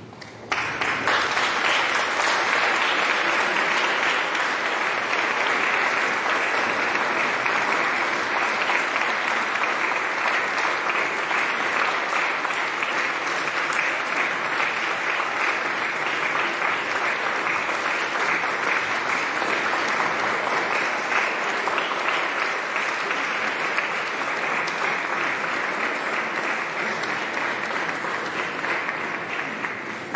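Audience applauding steadily, welcoming a choir onto the stage; the clapping starts suddenly about half a second in and tails off near the end.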